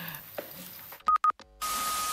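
Electronic beeps at a single steady pitch, starting about a second in: two short beeps, then a longer beep over a hiss. They are telephone-like tones of the kind that open an animated TV intro sting.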